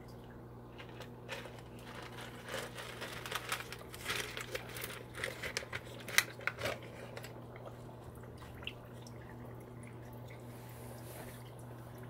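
Faint handling noises: small clicks, rustles and light water sounds as a small plastic-bottle aquarium filter on airline tubing is set into a tank, mostly in the first half, over a steady low hum.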